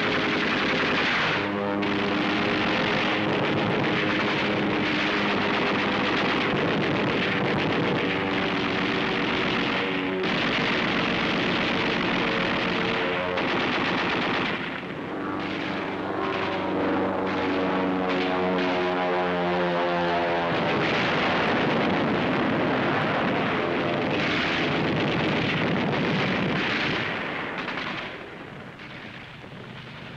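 Rapid anti-aircraft machine-gun fire, continuous and loud, with a pitched drone running beneath it at times; the firing dies down a couple of seconds before the end.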